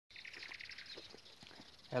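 A small bird chirping faintly in a rapid run of short high notes that fades out about a second in.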